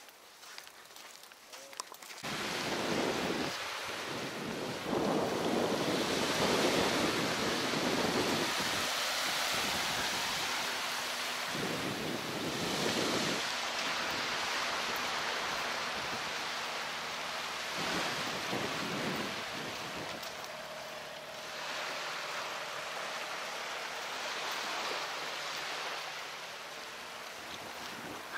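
Wind buffeting the microphone in repeated gusts over the wash of small waves on a sandy beach, starting suddenly about two seconds in.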